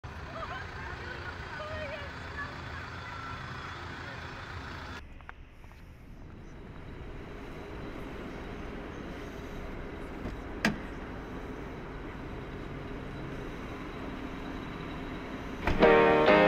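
Fairground crowd chatter and voices, then a sudden change to a car's engine rumbling low as heard from inside the cabin, with a single short sharp sound about two-thirds of the way through. A piano-led song comes in loudly near the end.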